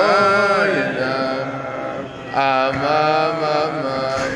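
Wordless Chassidic niggun sung by voice: long held notes that slide between pitches, with a short break about two seconds in.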